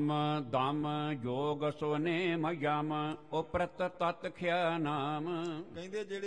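A man's voice chanting a verse of scripture in a slow, melodic recitation, with long held notes that waver in pitch and short breaks between phrases.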